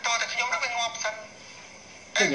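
A man talking in Khmer for about a second, then a pause.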